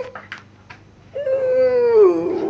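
A three-month-old kitten meowing: one long, drawn-out meow that starts just past a second in and holds a steady pitch.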